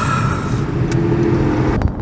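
Car cabin noise while driving: a steady low rumble of road and engine heard from inside the car, with a brief hiss at the start.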